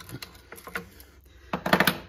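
Light metallic clicking and clatter of a hex driver working scope-ring screws loose and spinning them out, with a short burst of louder clicks near the end.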